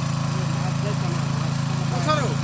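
A small engine running steadily with a constant, even hum.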